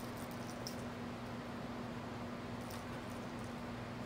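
A steady low electrical hum, with a few faint light clicks and taps from a kitten's paws and a pom-pom toy striking a wooden floor, some near the start and a couple around three seconds in.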